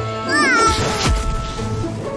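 Cartoon sound effects over children's background music: a short high squeal that rises and falls, then about a second in a swat and a deep boom with a falling low sweep.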